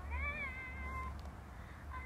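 A single high-pitched vocal call that rises and then falls in pitch, lasting just under a second near the start, heard as playback of a phone voice memo over a steady low hum.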